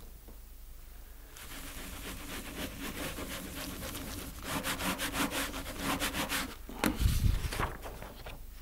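A baren rubbing over the back of a sheet of paper laid on an inked woodblock in Japanese hand printing. The rubbing starts about a second and a half in and runs in quick strokes of about four a second through the middle. A louder low bump and paper handling come near the end as the printed sheet is lifted off the block.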